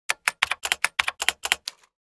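Typing sound effect: a quick, irregular run of about a dozen sharp key clicks, roughly seven a second, that stops shortly before two seconds in.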